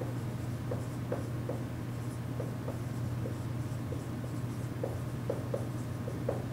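Dry-erase marker writing on a whiteboard: a quick series of short squeaky strokes as words are written, over a steady low hum.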